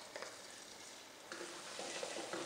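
Minced garlic frying in a little oil in a metal wok, stirred with a spatula: a faint sizzle that gets louder about a second and a half in.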